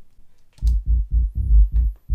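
Output of Logic Pro X's Sub Bass plug-in alone, fully wet with the dry signal off: a synth bass line turned into deep sub-bass notes. The short notes repeat about five times a second and start about half a second in.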